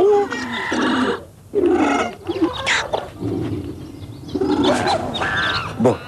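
A series of zoo animal and bird calls, several short cries one after another with bending pitch.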